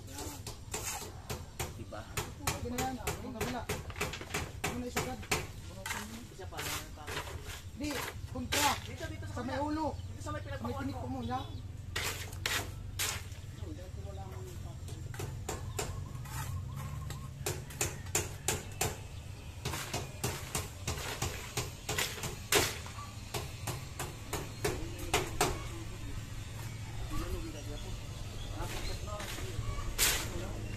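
Irregular sharp taps and knocks of a steel trowel on concrete hollow blocks and mortar as a block wall is laid, with voices talking in the background.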